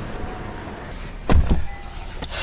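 A sedan taxi's rear door shutting with one heavy thud about a second and a half in, over steady street traffic noise.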